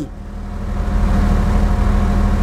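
A motor running with a low rumble and a steady hum, growing louder over the first second and then holding steady.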